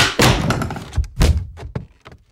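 A quick run of thuds and knocks, five or six hits in two seconds. The loudest come at the very start and about a second and a quarter in.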